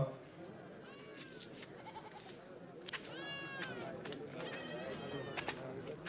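Faint background with two bleats from livestock, one about three seconds in and a longer one near five seconds, among a few light clicks.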